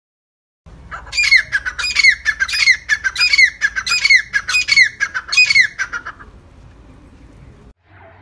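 A white teetar (francolin) calling loudly: a run of about seven repeated shrill phrases, evenly spaced, that stops about six seconds in.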